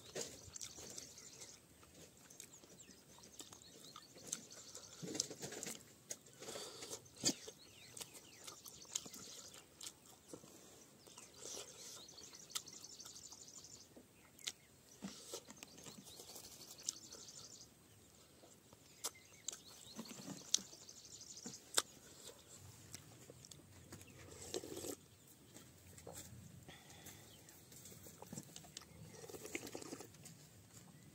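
Close-miked mukbang eating sounds: chewing, lip smacks and sharp little mouth clicks as rice and fish curry are eaten by hand, faint and intermittent. Small birds chirp in the background.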